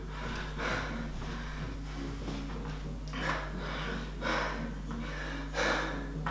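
A man breathing hard after exertion, a series of faint breaths roughly a second apart as he recovers between sets, over a steady low hum.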